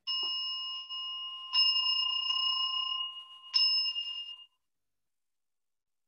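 A small Buddhist altar bowl bell (rin) struck three times, at the start, about a second and a half in and about three and a half seconds in, with a lighter tap in between. Each strike rings on with a clear, high, bright tone, and the ringing stops about four and a half seconds in.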